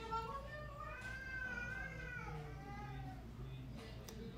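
A child crying faintly: one long, wavering wail of about three seconds that drops lower in pitch in its second half.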